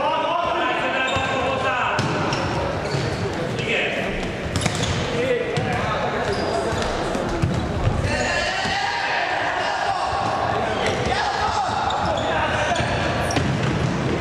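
A futsal ball being kicked and bouncing on the wooden floor of a large sports hall, with short sharp knocks through the play. Voices call and shout in the hall throughout.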